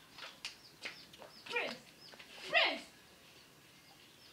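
An animal crying out twice, each cry falling steeply in pitch, about a second apart, the second louder. Birds chirp and small clicks sound throughout.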